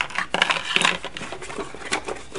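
Cardboard box being handled: a run of light knocks, scrapes and rustles as a primed miniature is set down inside and the lid is closed over it.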